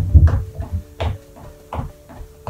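Trainer-clad feet striking a wooden floor in steady seated marching, a footfall roughly every two-thirds of a second.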